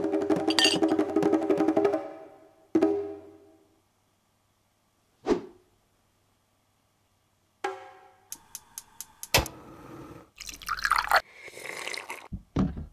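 Sparse cartoon soundtrack: a short pitched musical phrase that stops about two seconds in, then isolated sound effects with silence between them: a struck note that rings out, a single drip-like plop, a quick run of clicks and a knock, and a sliding tone near the end.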